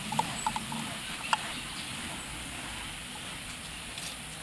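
A screw being turned into a wooden board with a hand screwdriver, giving a few short squeaks and clicks in the first second and a half over a steady background hiss.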